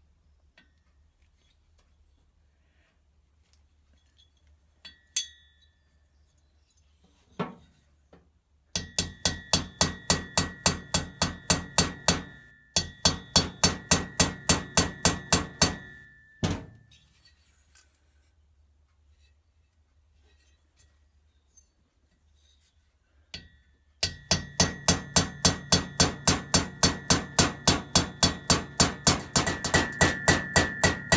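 Ball-pein hammer tapping rapidly on a part in a Citroën 2CV's aluminium cylinder head, about five light ringing strikes a second, driving in a valve guide. There are a few single knocks, then three long runs of taps, the last starting about 24 seconds in.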